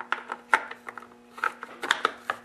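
Stihl MS 250 chainsaw's clutch cover being pressed into place over the bar studs by hand: a handful of light clicks and knocks as it seats against the saw body, over a faint steady hum.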